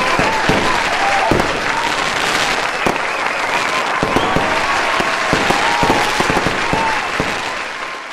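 Fireworks going off with a crowd cheering and clapping: many sharp pops and bangs over a steady wash of crowd noise, with a few short whistles, fading toward the end.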